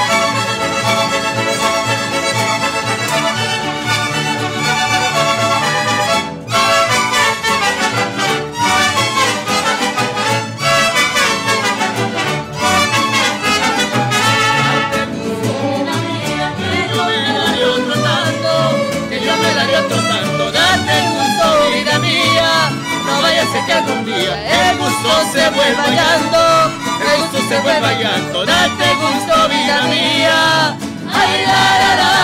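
Mariachi ensemble playing a son: trumpets hold long notes for the first few seconds, then violins, vihuela, guitar and guitarrón come in with the strummed three-four, six-eight rhythm.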